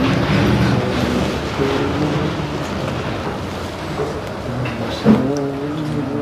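A man's voice chanting Arabic verse in long, drawn-out melodic notes, fading for a while in the middle and swelling again near the end, over a steady background noise.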